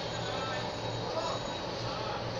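Steady background noise with faint, indistinct voices in it.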